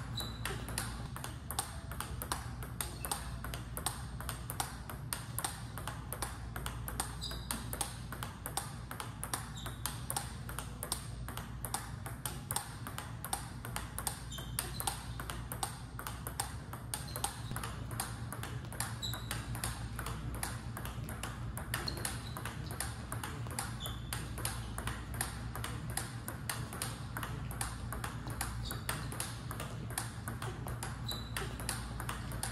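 Table tennis ball clicking off rubber paddles and bouncing on the table in a fast, steady rally, several sharp ticks a second without a break. There are occasional short high squeaks, and a low room hum underneath.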